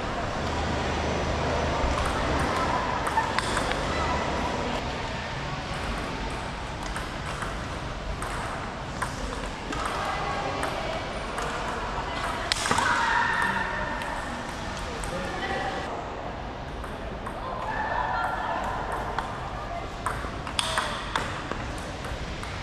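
Table tennis ball clicking off rubber bats and bouncing on the table through a rally: repeated short, sharp ticks at an uneven pace, over a background of voices in the hall.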